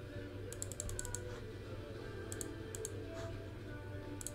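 Computer keyboard typing: several short bursts of key clicks, over a low steady hum.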